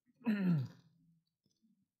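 A man's short voiced sigh, falling in pitch and lasting about half a second, followed by a few faint clicks.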